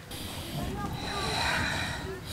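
A person's breathy hissing and snorting, noisy rather than spoken, with a faint thin high tone in the second half.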